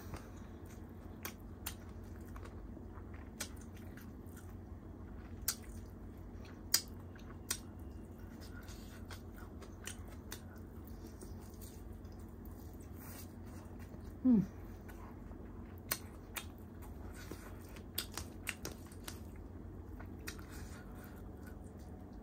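Close-up eating sounds: chewing and wet mouth clicks and smacks as chicken and biryani rice are eaten by hand, scattered at irregular intervals. A brief hummed 'mm' with falling pitch about fourteen seconds in.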